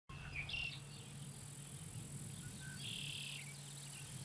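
Faint, steady, high-pitched chorus of crickets and other insects in a summer meadow, with two short bird chirps, one about half a second in and one about three seconds in.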